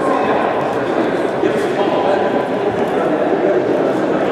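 Indistinct chatter of many overlapping voices in a gym crowd, with no clear words.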